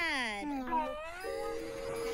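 Several cartoon voices slide down in pitch together in a drawn-out groan during the first second. Then a held chord of background music sounds from a little past halfway.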